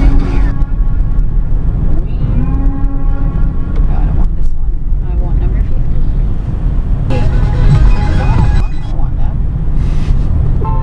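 Road and engine noise inside a car's cabin at highway speed, a steady low rumble, with the car radio playing music and a voice over it.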